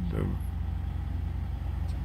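A steady low mechanical hum runs under a single spoken word at the start.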